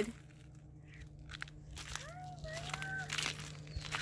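A faint, steady low hum from an outdoor air-conditioner unit, with light crunching on a gravel path. About two seconds in comes a soft, drawn-out, voice-like call.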